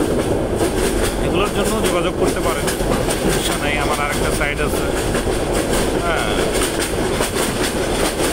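Passenger train running, heard from inside a carriage: a steady rumble with the clickety-clack of the wheels over the rail joints.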